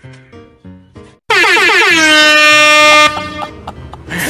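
A loud horn-like comedy sound effect cuts in over light background music about a second in. Its pitch swoops down at the start, then it holds one steady blare for nearly two seconds and stops abruptly.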